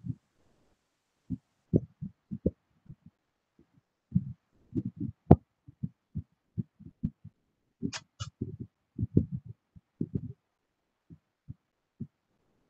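Choppy, muffled low-pitched sounds coming through a video-call audio feed, cutting in and out irregularly. There is a sharp click about five seconds in and a double click about eight seconds in.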